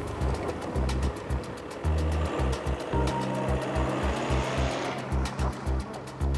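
Background score music with a pulsing bass line and a steady ticking beat. A whooshing swell builds through the middle and drops away near the end.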